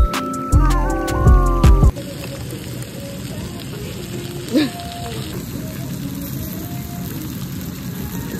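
Background hip-hop music that cuts off about two seconds in, then a hot stone bowl (dolsot) of squid bibimbap sizzling steadily.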